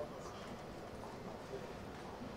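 A few faint, sharp clicks of heeled shoes stepping on a wooden stage, over a low murmur.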